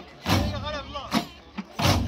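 Large Amazigh frame drums of an ahwash troupe struck together in a steady deep beat, a little more than one stroke a second, with a wavering voice singing between the strokes.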